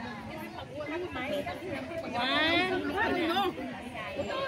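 Indistinct chatter of several people talking. One higher-pitched voice is loudest about two seconds in.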